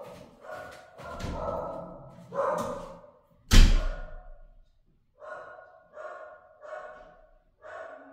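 A dog barking repeatedly in short, evenly spaced barks, with a single loud slam about three and a half seconds in.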